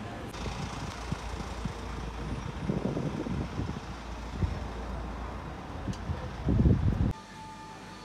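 Outdoor street sound of road traffic, with low wind rumble on the phone microphone that swells loudest shortly before the end. About seven seconds in it cuts abruptly to a quieter indoor room with a few faint steady tones.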